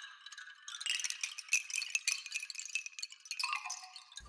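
Bamboo wind chimes clattering: many light, irregular strikes with short ringing tones, close-miked. Somewhat deeper chime tones join near the end.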